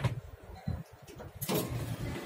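Elevator car coming to a stop at its floor, with a sharp click at the start and a low rumble. About a second and a half in, a loud rush begins, typical of the doors sliding open, and louder surrounding noise follows.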